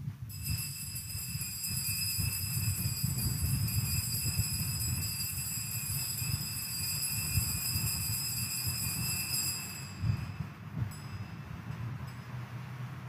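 Altar bells ringing continuously at the elevation of the host after the consecration, stopping about ten seconds in, over a low steady rumble.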